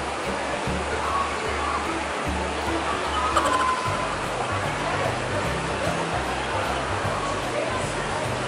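Steady splashing of a small fountain jet into a pond, with background music's bassline underneath.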